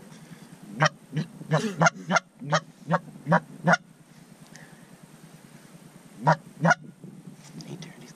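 Canada goose honks: a quick run of about nine short, loud honks in the first four seconds, then a pause and two more honks about six seconds in.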